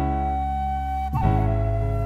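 Daegeum (Korean bamboo transverse flute) holding a long, steady note, then sliding through a quick ornament about a second in to a slightly lower held note, over a low sustained band accompaniment.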